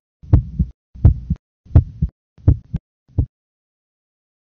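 Human heartbeat sounds, each beat a double 'lub-dub': the mitral and tricuspid valves closing, then the aortic and pulmonary valves. Five beats come about 0.7 s apart, roughly 85 a minute, and stop a little after three seconds in.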